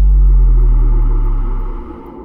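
Deep cinematic bass boom: a sudden, very loud low impact hit that fades away over about two seconds, leaving a quieter low drone underneath.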